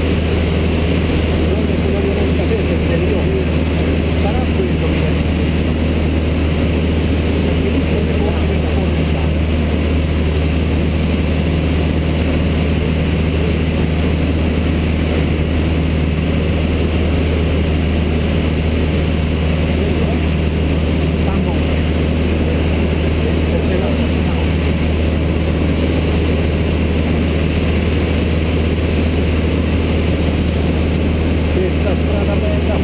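Light single-engine propeller plane's piston engine and propeller droning steadily in flight, heard from inside the cockpit.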